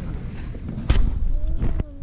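Wind noise on the microphone, a low rumbling hiss, with a single sharp knock about a second in.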